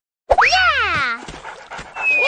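Cartoon sound effect: a loud pitched 'boing'-like tone that sweeps up sharply, then slides down over about a second, starting a moment in.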